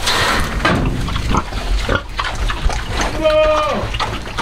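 An armful of fresh-cut grass rustling as it is dropped into a straw-bedded pig pen, then a sow munching and rooting in the grass. A short, high-pitched call sounds near the end.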